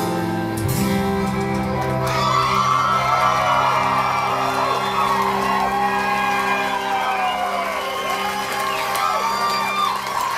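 A live rock band holds its last chord, which rings on and slowly thins out, while a club crowd cheers and whoops over it from about two seconds in.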